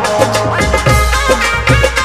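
Rajasthani folk devotional music, an instrumental passage: a sustained stepping melody line over a steady drum beat and bass.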